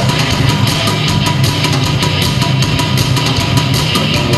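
A live rock band playing loud and steady: a drum kit drives a fast beat with cymbal hits over electric guitar.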